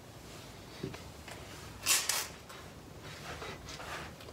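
Faint handling noises under a truck: a small click about a second in, a brief louder rustle around two seconds in, and a few soft scuffs near the end as a hand reaches up toward the transfer case with a new speed sensor.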